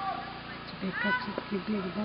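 A woman talking in Algonquin, speech that was not written down in English.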